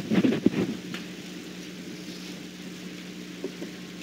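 Room tone: a steady low hum over faint hiss, with a few brief, short sounds in the first second.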